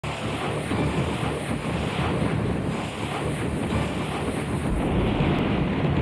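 A loud, steady rushing sound effect like strong wind, a dense even noise that starts abruptly and keeps on without a break.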